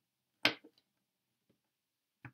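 Tarot cards handled on a wooden table: one sharp tap about half a second in, then a few light clicks.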